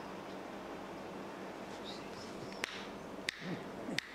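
Steady hall hum, then three sharp finger snaps beside a man's ear in the last second and a half, testing his hearing after prayer for deafness.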